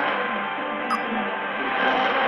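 Music received over a medium-wave AM radio on 810 kHz at long range: muffled and cut off above the AM band's narrow audio range, under steady static and noise. A single click about halfway through.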